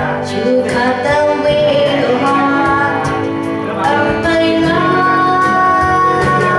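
A woman singing a pop song into a handheld microphone over instrumental backing music with guitar, holding a long note over the last second or so.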